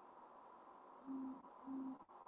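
Near silence, then two short, low, steady tones of the same pitch about half a second apart, a little over a second in.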